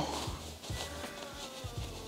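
Quiet rustling of satin fabric being pulled and worked through a small opening as a bonnet is turned right side out, with a faint thin tone drifting slowly downward in the background.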